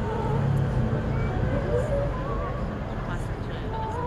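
Indistinct voices of people talking, none of it clear enough to make out, over a steady low rumble of outdoor background noise.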